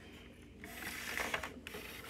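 Faint clicking and rattling of plastic LEGO bricks being handled, with a few small clicks.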